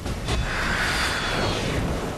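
Water jets from a fire-hose-fed jet pack blasting down onto a lake, a loud rushing spray that swells about half a second in.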